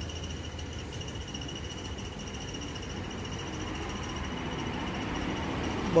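Outdoor background: a steady, high, pulsing insect trill over a low rumble that grows slightly louder toward the end.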